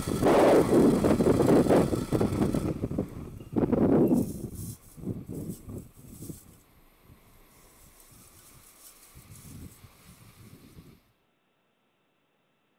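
Noise of the Falcon 9 first stage's nine Merlin 1D engines during ascent. It is loud at first, with a strong surge about four seconds in, then falls away unevenly over several seconds. It cuts to silence about eleven seconds in.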